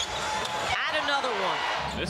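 Basketball arena sound from a game broadcast as a corner three-pointer is in the air: court and crowd noise, then a single drawn-out call, falling in pitch, lasting about a second.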